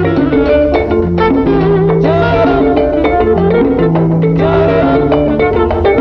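Instrumental break of an Afro-Cuban salsa song: the full band plays without vocals, over a moving bass line and steady percussion.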